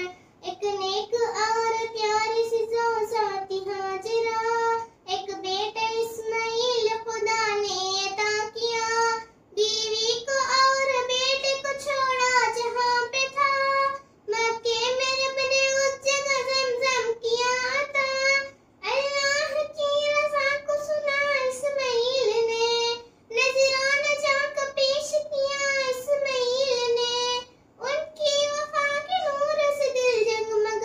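A young girl singing an Urdu devotional verse narrative about the Qurbani story, unaccompanied, in long held phrases with short breath pauses every four to five seconds.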